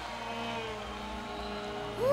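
A soft synthesizer chord held steady, the quiet intro of a song played live by a rock band.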